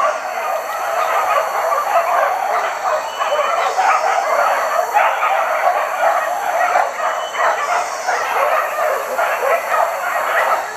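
A pack of boar-hunting dogs barking without pause, several dogs at once so the barks overlap.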